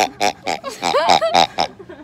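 Squeezable pink rubber pig toy being squeezed over and over, giving a rapid series of short, high oinking squeals, about six in two seconds.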